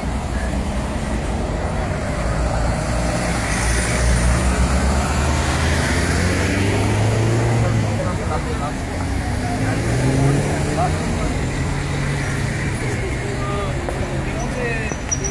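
Street traffic: a steady rumble of car engines and tyres that swells for several seconds in the middle, with people talking over it.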